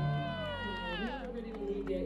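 A single high, voice-like call that slides steadily down in pitch over about a second and trails off, with faint crowd and music noise behind.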